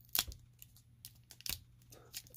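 Faint crinkling of a trading-card pack's wrapper being picked at and pulled to tear it open, with two sharp crackles, one just after the start and one about a second and a half in. The pack is stubborn and does not open easily.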